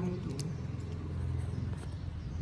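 A steady low background rumble, with a single spoken word at the start.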